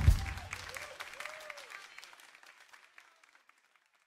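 Audience applauding, opening with a low thump, with a couple of short whoops in the first second and a half; the clapping fades away to nothing by about three and a half seconds.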